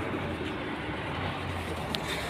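Steady outdoor background noise with a faint low hum, and a single short click near the end.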